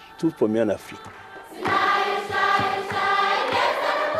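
A choir begins singing about a second and a half in, holding long sustained notes.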